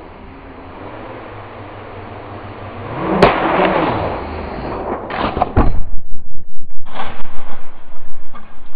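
FPV freestyle quadcopter with T-Motor F40 Pro V2 2400kv motors buzzing louder as it closes in, its pitch sweeping up and down as it punches through a paper poster with a sharp rip about three seconds in. A few loud knocks follow about two seconds later. From about six seconds a fast, loud rhythmic pulsing takes over.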